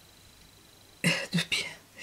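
A woman coughs a few times in quick succession, short sharp coughs about a second in.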